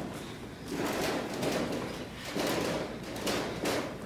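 Writing by hand on a board in a series of scratchy strokes, about four in a few seconds.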